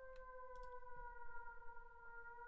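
Synth siren sound made in Serum from a sine wave with the glide (portamento) turned all the way up. It plays one sustained mid-pitched tone that starts abruptly, dips slightly in pitch at the onset, then drifts slowly lower.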